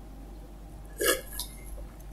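A man drinking from a glass: one short gulp about a second in, then a fainter throat sound, over a low steady room hum.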